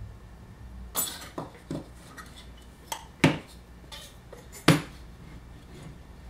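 Wooden pipe pieces and a steel threaded rod knocking and clinking together as the pieces are handled and stacked onto the rod. There are about six sharp knocks, some with a brief metallic ring, and the loudest two come about three seconds in and near the end.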